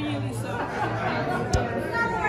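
Several voices talking over one another in a large hall, with a low steady hum beneath and one sharp click about one and a half seconds in.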